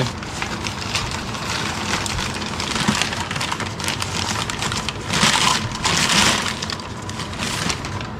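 Packing paper crumpling and rustling as hands dig through it in a plastic tote, with louder bursts about five and six seconds in.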